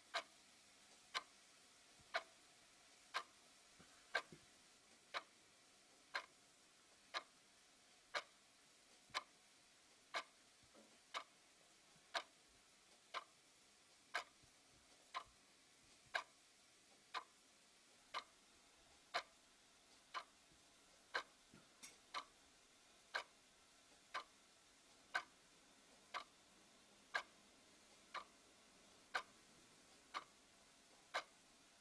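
A clock ticking steadily, about one tick a second, over near silence.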